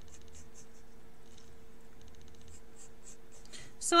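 Pen drawing on paper in a series of short strokes, over a faint steady hum.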